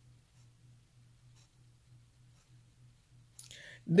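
Quiet room tone in a pause of speech: a low steady hum with a few faint clicks, then a faint breath near the end as a woman's voice starts up again.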